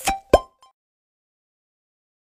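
A few short, sharp pitched pops in quick succession, the loudest about a third of a second in, then silence.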